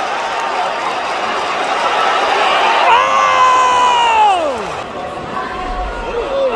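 Arena crowd cheering, then about three seconds in one loud, close screamed yell that holds its pitch for over a second and then drops away.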